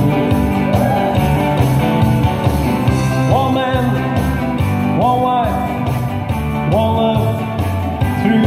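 Country rock-and-roll song played live: a male singer with a Telecaster-style electric guitar over a steady bass and drum beat. Three long notes slide up into place and hold, about a second and a half apart.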